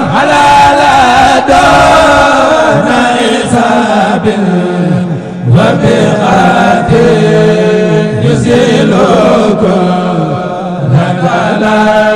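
A man chanting an Islamic religious song solo, with long held notes that slide up and down in pitch.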